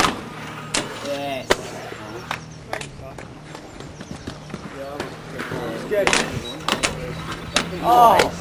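Sharp clacks and knocks of inline skates landing on and coming off a metal handrail and paving as a skater tries a rail trick, repeated several times. A man shouts "oh" near the end.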